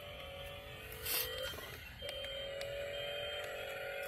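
Electric ride-on toy Mercedes-Benz car's motor whining at a steady pitch as it drives. It cuts out about a second and a half in, as the pedal is let off, and starts again half a second later.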